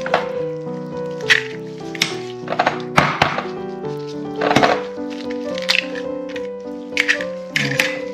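Background music with held notes over a few sharp knocks and cracks: hen's eggs being cracked open into a glass bowl.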